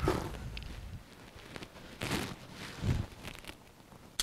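Rustling and scuffing of sticks and brush with a few soft knocks, from handling a body-grip trap on a beaver lodge. Strongest near the start, at about two seconds, and just before three seconds.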